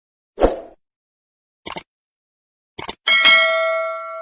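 Like-share-subscribe outro sound effects: a short thump, then two quick double clicks about a second apart, then a bell ding that rings out and slowly fades.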